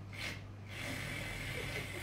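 A rakugo performer slurping with his mouth, miming eating noodles: one short slurp near the start, then a longer slurp lasting over a second.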